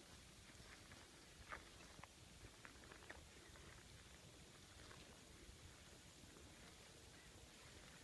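Near silence: outdoor quiet with a few faint, soft ticks and swishes, typical of footsteps through tall dry grass.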